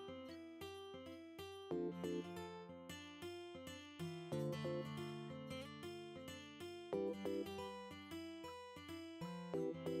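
Background music: acoustic guitar picking notes in a light, repeating pattern.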